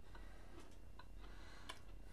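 Faint, irregular small clicks of a person chewing a crunchy cookie, about four in two seconds.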